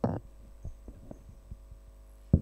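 A handheld microphone being handled as it is carried: a louder low thump at the start, then softer thumps about every half second, over a steady electrical hum from the sound system.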